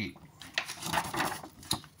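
A large folded paper instruction sheet being handled, with soft, irregular rustling and crinkling and a sharp click near the end.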